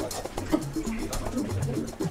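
Indistinct voices, low-pitched and wavering, with no clear words.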